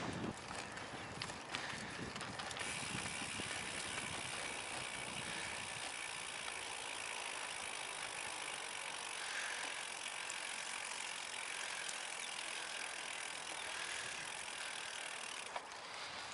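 Bicycle coasting on a muddy path: the rear freewheel ratchet ticks so fast it makes a steady buzz, over the hiss of tyres on wet dirt, with a rougher rumble in the first couple of seconds.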